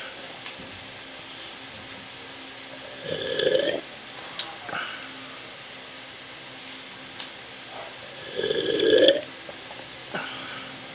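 A man burping loudly twice after gulps from a glass mug of juice: once about three seconds in and again near the end, each under a second long.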